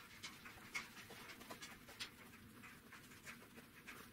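Near silence, broken by faint, irregular soft rustles and light taps of cotton quilt pieces being picked up and set down by hand on a pressing board.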